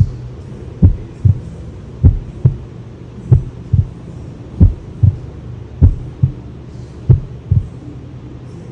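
Heartbeat sound effect: paired low lub-dub thumps repeating slowly and evenly, about one pair every 1.25 seconds, over a steady low hum.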